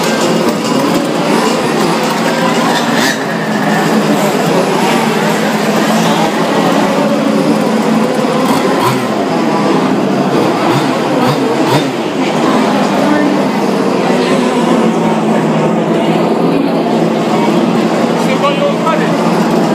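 Many large-scale RC cars' small two-stroke petrol engines running together as a continuous loud drone, with voices mixed in.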